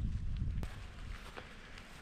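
Wind on the microphone with the faint steps of someone walking on a grassy path, growing quieter toward the end.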